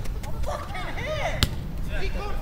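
Footballers shouting to each other across the pitch, with one sharp thud of a football being kicked about one and a half seconds in.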